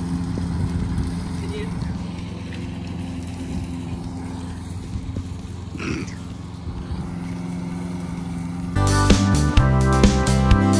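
Corded electric lawn mower running with a steady hum. About nine seconds in, music with a drum beat starts.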